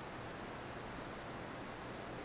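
Faint, steady hiss of room tone and microphone noise, with no distinct sound events.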